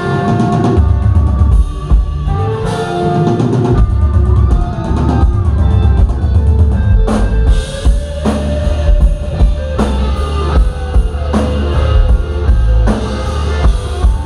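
Live rock band playing loud: a Telecaster-style electric guitar plays held, bending lead notes over a driving drum kit and bass.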